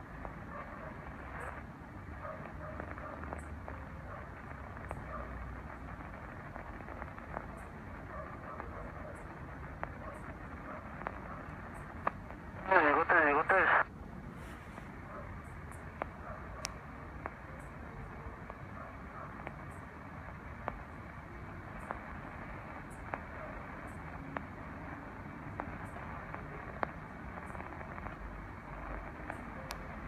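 A Tecsun PL-660 shortwave receiver on AM, tuned across the 27 MHz CB band, plays static hiss through its speaker with weak, barely audible voices under it. About thirteen seconds in, a strong signal breaks in for about a second as a loud warbling sound.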